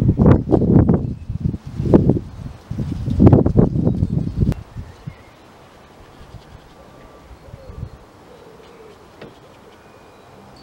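Low rumbling buffeting on the microphone in three loud clumps over the first four and a half seconds, then a quiet, steady outdoor background.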